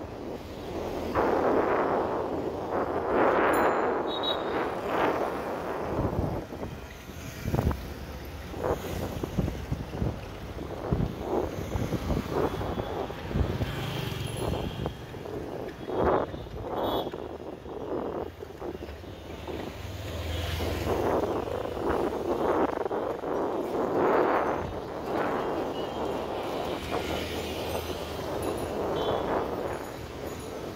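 City street traffic of cycle rickshaws and auto-rickshaws heard from a moving vehicle, with wind gusting on the microphone in swells. Scattered sharp knocks and rattles come through in the middle stretch.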